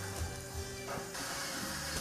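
Soft background music with steady low sustained notes; a faint hiss comes in about a second in.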